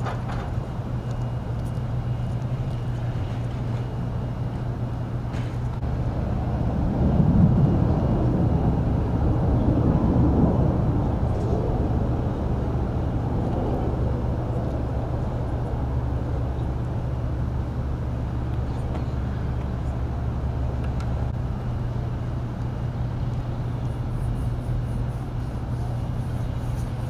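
Steady low hum of street traffic with an engine running, swelling as a vehicle passes about seven seconds in and fading again by about twelve seconds.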